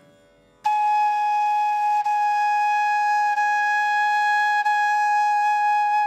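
Bamboo Carnatic flute (venu) playing one long, steady note, starting about half a second in and held without a break. The tone is clear, with the breath directed fully into the blowing hole rather than escaping outside.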